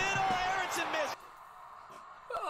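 A man's raised, excited voice calling out for about a second, then cutting off suddenly to quiet.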